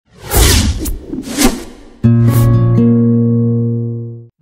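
Channel logo ident sting: about three quick whooshes, then a sudden held synth chord that slowly fades out.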